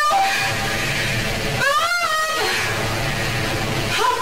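Layered sound-design drone: a steady low hum under a noise bed, with a wailing pitched tone that bends up and back down about two seconds in.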